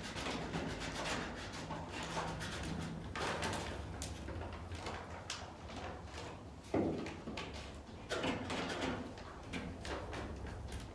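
Rustling and scraping of a vinyl decal, its paper transfer sheet and blue painter's tape being handled and pressed by hand against a glass door, in a series of short strokes, with one sharp knock on the door about two-thirds of the way through.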